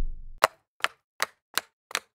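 Five sharp, evenly spaced ticks, a little under three a second, on a dead-silent background. They follow the low, dying tail of a heavy hit at the start.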